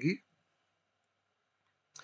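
A man's voice finishes a word, then near silence with a faint hiss, and a brief soft click near the end.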